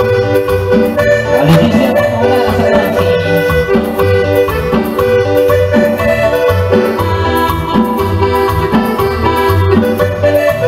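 Live band playing an instrumental passage with no singing: congas and guitar under a sustained melodic lead line, over a steady, pulsing bass beat.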